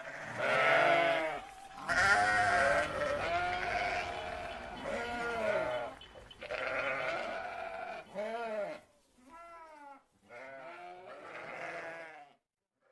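Sheep bleating: a string of about seven wavering calls, one after another with short gaps.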